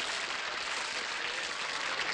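A steady, even hiss of background noise, with no voice or music in it.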